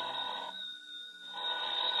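A steady high ringing made of several held tones. It fades briefly about half a second in and grows louder toward the end.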